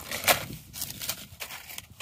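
Dry, dead gunnera leaves and straw crackling and rustling as they are handled, in a few short irregular crackles.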